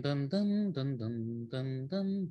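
A man's voice singing a short melodic phrase of held notes that step up and down, sketching a counter melody.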